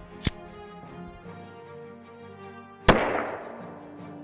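A single pistol shot from a Glock 10mm Auto, loud and sudden about three quarters of the way in, its echo trailing off over about a second. A short sharp click comes shortly after the start, and music plays underneath throughout.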